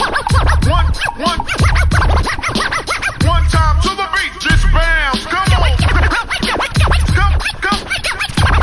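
Hip-hop beat with turntable scratching and no vocals: quick, repeated rising-and-falling pitch sweeps over a steady kick drum.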